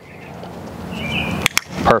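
Dog-training clicker giving one sharp double click, press and release, about one and a half seconds in. It marks the moment the puppy's nose touches the red target.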